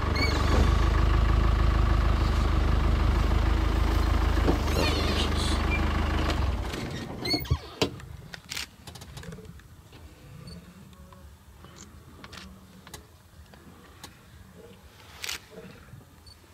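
Vehicle engine running steadily as the vehicle moves forward a short way, then stopping abruptly about six and a half seconds in. After that there is only a faint low hum and a few sharp clicks.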